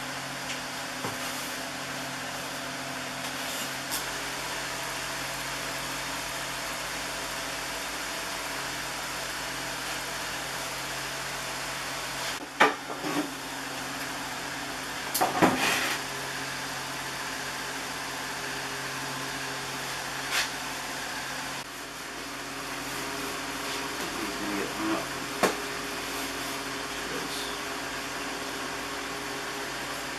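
Steady machine hum with a few short knocks and clatters as wooden bread peels and dough are handled, the loudest about twelve and fifteen seconds in.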